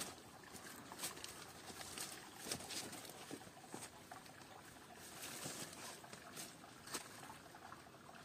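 Rustling of leaves and brush and footsteps on dry leaf litter as people push through dense undergrowth, with irregular faint crackles and snaps of twigs.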